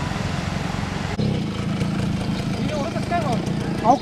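A steady low rumble with a sudden change about a second in, likely an edit; a voice comes in during the second half and grows loud near the end.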